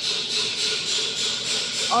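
A steady machine hiss, begun just before, with a faint low hum beneath it, from the semi-automatic wax filling machine running.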